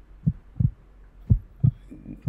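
Heartbeat sounds: low double thumps, lub-dub, about one pair a second.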